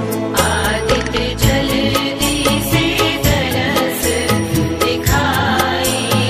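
Music of a Bhojpuri Chhath devotional song: an instrumental passage between sung lines, with a steady beat.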